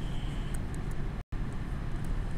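Steady low room noise with a few faint taps of a stylus on a tablet screen as a word is written. The sound drops out completely for an instant just past the middle.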